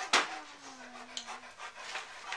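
Rapid panting, a few quick breaths a second, with the strongest breath just at the start. A faint low hum slowly falls in pitch through the first second and a half.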